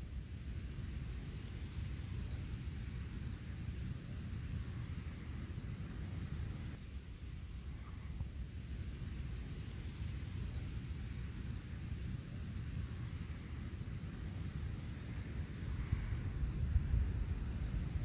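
Wind rumbling on the microphone outdoors, a steady low buffeting that swells a little near the end, with a few faint high ticks.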